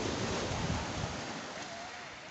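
Surf washing up a pebble beach: a steady rush of breaking water, with a low wind rumble on the microphone that drops away about halfway through.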